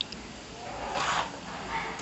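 Hot oil sizzling steadily in a large iron kadai as jangris fry, with a louder, brief noise about a second in.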